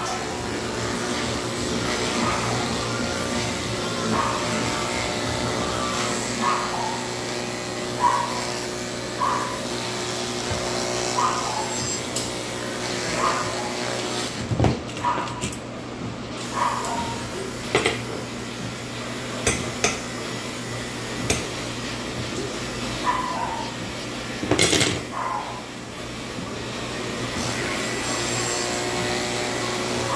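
Electric dog clippers running with a steady hum, which falls away in the middle while scissors snip a few times, and comes back near the end. Short high whines from the Pomeranian come every second or two.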